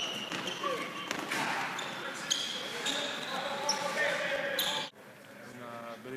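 Handball practice in an echoing sports hall: a handball bouncing and being thrown, shoes squeaking on the court floor, and players calling out. It cuts off suddenly about five seconds in.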